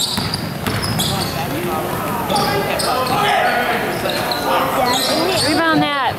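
A basketball being dribbled on a hardwood gym floor, with spectators' voices echoing in the hall. Near the end comes a quick run of high squeaks, typical of sneakers on the court.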